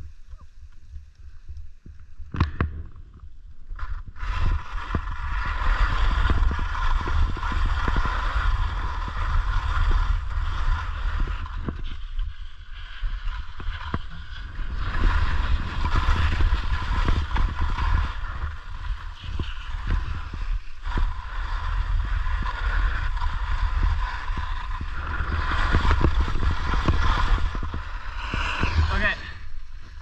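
Skis sliding and scraping over snow at speed, with wind buffeting the microphone. The rush builds about four seconds in and then eases and swells again as the skier turns.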